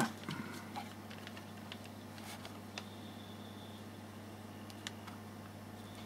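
Quiet room tone: a steady low hum with a few faint, scattered clicks and rustles.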